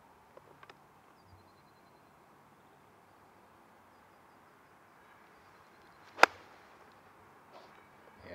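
Golf iron striking the ball on a full fairway shot: a single sharp crack about six seconds in, against a quiet open-air background.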